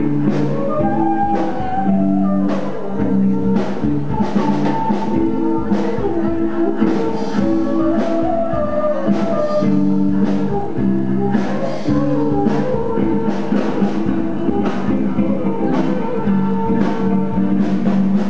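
Live band: a flute carries the melody over electric guitars and a drum kit keeping a steady beat.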